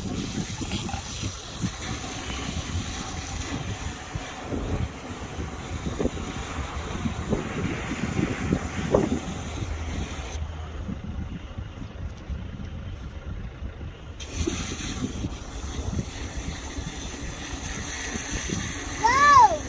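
Wind buffeting the phone's microphone, a steady low rumble, with a few faint brief sounds between about six and nine seconds in.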